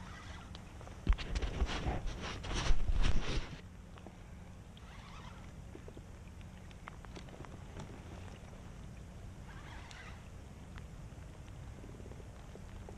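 A burst of irregular knocks and rattles starting about a second in and lasting about two and a half seconds, then only faint background noise with scattered light ticks.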